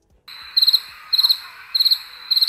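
Crickets-chirping sound effect, the stock gag for an awkward silence: three short trilled chirps about every 0.6 s over a steady hiss that switches on abruptly just after the start.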